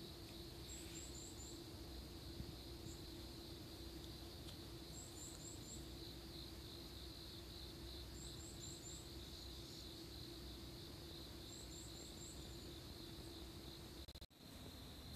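Faint bird calls: a quick run of four high chirps, repeated four times at intervals of about three and a half seconds, over a steady high-pitched background hiss.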